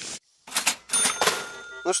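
Cash register 'ka-ching' sound effect: a few quick clattering clicks and a bright ringing bell that fades out within about a second.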